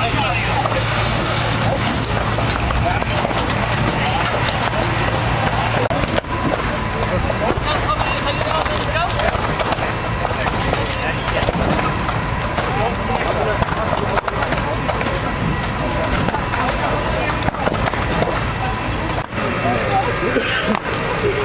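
Outdoor ambience of voices talking indistinctly over a steady low engine hum. The hum cuts off about six seconds in, and the voices and general outdoor noise carry on after it.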